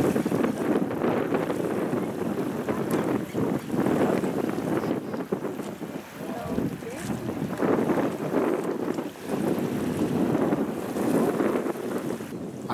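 Wind buffeting the microphone, a rushing rumble that rises and falls in gusts, dipping briefly a little after the middle.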